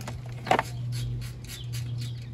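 Short metallic clicks as a chrome 13 mm socket is pulled from its rail in a plastic socket-set case, the loudest about half a second in, over a steady low hum.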